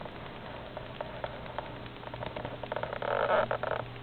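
A baby army-crawling over pillows on a carpeted floor: light scuffs, then a rough burst of noise lasting about a second, starting a little under three seconds in.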